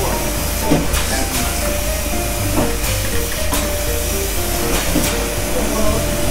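Barrel-polishing machine running: a motor-driven spindle churns a motorcycle wheel through wet, foaming abrasive media in a drum. A steady rushing hiss with a constant hum, and a few sharp clicks.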